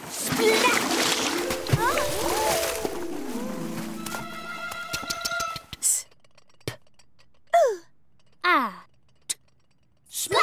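Cartoon water splash sound effect mixed with a magical musical flourish, lasting about five seconds. After that come a knock and two short falling cartoon voice sounds.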